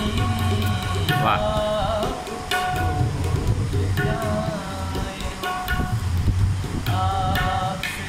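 A man singing with tabla accompaniment: held, bending vocal notes in phrases broken by short pauses, over a running pattern of tabla strokes.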